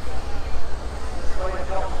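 Chieftain tank's Leyland L60 two-stroke multi-fuel engine running as the tank drives slowly, a steady low rumble, with a voice talking over it.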